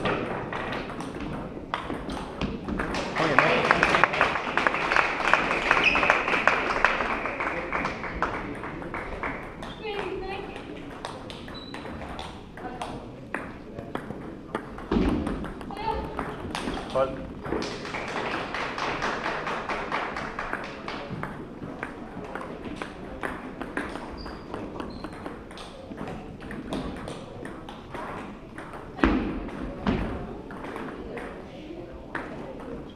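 Table tennis balls clicking off bats and tables through a stretch of play, against the voices and chatter of people in the hall. Two heavier thuds come about halfway through and near the end.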